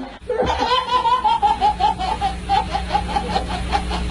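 Baby laughing in a long run of quick, even laughs, about five a second, starting about half a second in and sliding slightly lower in pitch.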